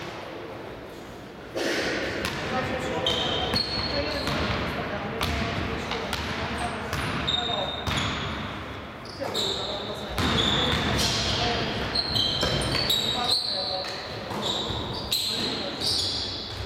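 Basketball being played on a gym floor: the ball bouncing, many short high squeaks of sneakers on the court, and players' voices calling out.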